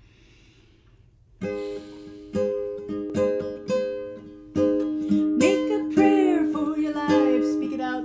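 Near silence, then about a second and a half in a classical guitar begins the intro, plucking chords in a slow rhythm that gets louder toward the end.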